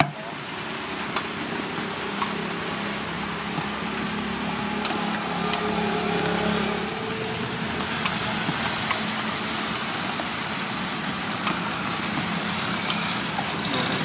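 Steady hiss of light rain falling, with the low hum of a motor vehicle engine running, strongest in the first half.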